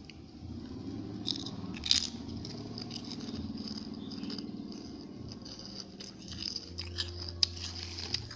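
Crunching and chewing of crisp snack chips (bim bim), with sharp crackles about two seconds in and again near the end.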